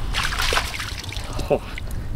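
Wet tidal mud and seawater squelching and trickling as a hand pulls out of soft mudflat mud, loudest in the first half second.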